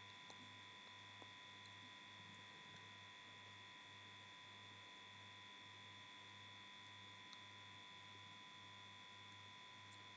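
Near silence: a faint steady electrical hum in the recording, pulsing about twice a second, with a few tiny ticks.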